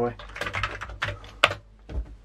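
Amiga computer keyboard being typed on: a run of quick key clicks. It ends with a louder key strike about one and a half seconds in as a command is entered.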